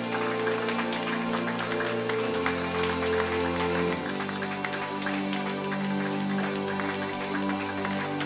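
Live funk band playing: sustained chords over a bass line that moves to a new note about every two seconds, with busy ticking percussion above.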